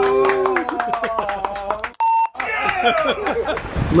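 People talking indistinctly, cut off about halfway through by a short, steady electronic beep lasting about a third of a second; the talk then resumes.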